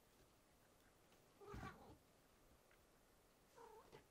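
Domestic cat giving two short calls, the first and louder about one and a half seconds in, the second shorter one near the end.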